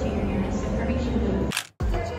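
Busy airport concourse background: a steady low hum with faint voices. About one and a half seconds in it cuts off with a sharp click and a brief moment of silence.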